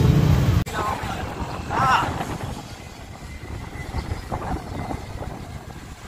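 A motorcycle engine idling close by, cut off suddenly about half a second in; then wind buffeting the microphone and a low rumble of riding on a road bicycle, with a couple of short shouts.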